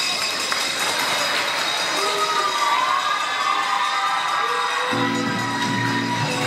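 A student audience cheering and applauding, with whoops and shouts, at the end of a poem. About five seconds in, recorded music starts under the crowd noise.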